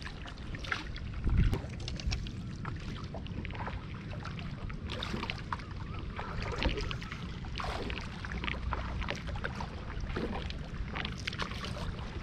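Kayak paddle blades dipping and splashing in the water, with irregular drips and water lapping against the plastic hull, over a steady low rumble. There is one louder thump about a second in.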